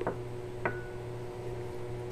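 Wooden spoon stirring sauce in a stainless-steel saucepan, with a light click at the start and one sharp knock with a brief ring about two-thirds of a second in, over a steady low hum.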